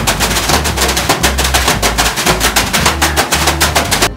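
Rapid, unbroken slapping of bath brooms (veniks) beating on a body in a steam room, many strikes a second, over background music with a steady bass beat.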